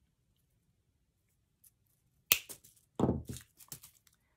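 Wire cutters snipping through the taped wire stems of a paper-flower cluster: one sharp snap a little past halfway. Close, short handling noise follows just before the end as the cutters are put down.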